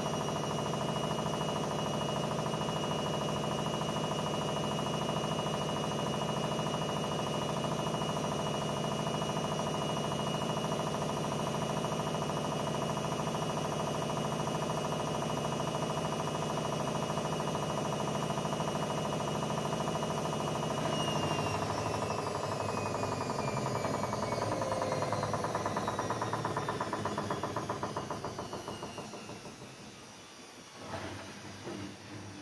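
Haier 7.5 kg front-loading washing machine on its final spin of a wool cycle: a steady motor whine and drum rumble. About two-thirds of the way through, the pitch starts falling as the drum spins down, and the sound fades near the end as the cycle finishes.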